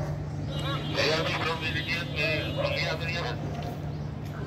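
Indistinct voices of people talking, over a steady low hum of vehicles.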